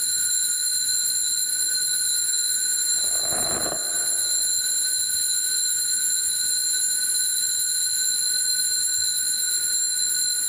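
Altar bells rung without pause to mark the elevation of the consecrated host: a steady, high ringing that does not fade. A short muffled noise sounds about three seconds in.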